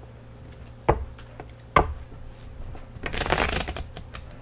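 Tarot deck handled on a tabletop: two sharp knocks about a second apart as the deck is tapped square against the table, then a rapid flutter of cards being shuffled near the end.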